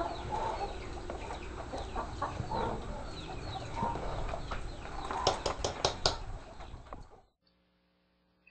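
Birds chirping and clucking repeatedly over a low background, while a metal ladle stirs in an aluminium pot, giving about five sharp knocks a little past the middle. The sound cuts off suddenly near the end.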